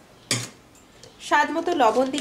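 A spoon knocks once against a glass mixing bowl while gram flour is added: one short, sharp clink a moment in that rings out briefly.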